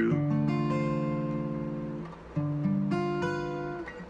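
Acoustic guitar playing two seventh chords in a voice-led sequence, each plucked and left to ring: the first at the start, the second a little after two seconds in, its notes entering one after another.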